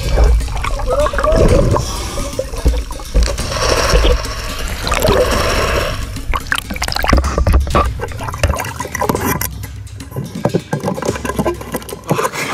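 Water rushing and bubbling around an underwater camera as scuba divers surface, with a deep rumble. About two-thirds of the way in the rumble stops as the camera leaves the water, and splashes and knocks follow.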